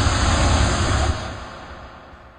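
A loud rushing noise that fades away over the second half.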